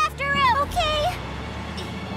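Cartoon voices shouting in about the first second over a steady low engine rumble, the sound of cartoon vehicles setting off in a chase; the rumble carries on alone once the voices stop.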